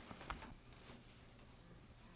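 Near silence: quiet room tone with a faint low hum, and a few faint small clicks in the first half second.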